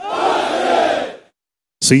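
A formation of soldiers shouting in unison, one short collective drill shout that starts abruptly and fades out after about a second.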